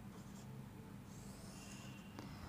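Faint scratching and squeaking of a marker writing on a whiteboard, stronger in the second half as a line is drawn, over a low steady hum.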